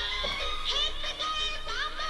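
A song playing with a high-pitched, processed-sounding sung vocal line that glides and bends over the music.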